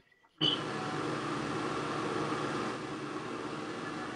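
Steady background hiss from an open microphone on an online call, cutting in abruptly after about half a second of dead silence.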